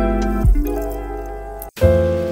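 Background music with sustained notes over a low bass; it drops out suddenly for a moment near the end and comes straight back in.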